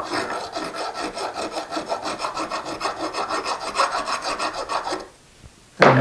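Hand file worked in quick, even strokes across the end of a 3/16-inch square high-speed steel tool bit, taking off a burr left where the mill broke through; the filing stops about five seconds in.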